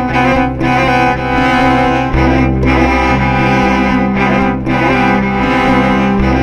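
Cello being bowed, playing sustained low notes under a repeating higher figure; the bass note changes about two seconds in.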